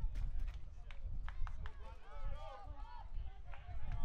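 Voices calling out across a baseball field, not close to the microphone, over a steady low rumble, with a few sharp clicks in the first half.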